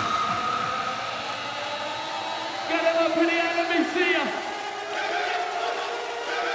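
Hardcore techno breakdown: the kick drum has dropped out, leaving held synth tones, and a man's voice calls out over them about three seconds in.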